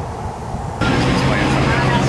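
Street noise: a steady low engine hum from a vehicle, with people talking around it. The hum comes in suddenly almost a second in.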